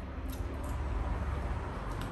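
Close-up eating sounds: a man chewing and sucking flesh off a piece of fish held in his fingers, with a few faint wet mouth clicks over a low steady rumble.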